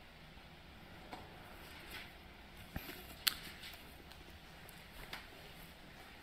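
Quiet small-room tone with a few faint, short clicks and rustles, about one a second, the sharpest a little past the middle: soft handling noises.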